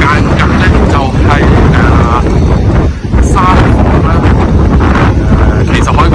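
Wind buffeting the microphone, a loud steady low rumble, with a voice heard faintly through it.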